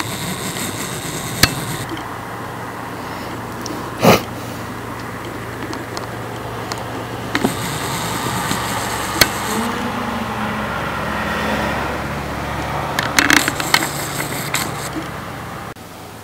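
Steady low mechanical hum over a haze of background noise, broken by a few sharp clicks.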